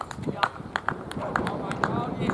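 A quick, irregular run of sharp clicks, about eight in two seconds, with voices in the background.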